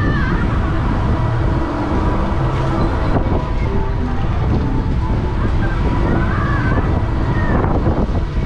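Wind rushing over the microphone of a camera riding on a spinning chairoplane swing ride, a loud steady rush heaviest in the low end.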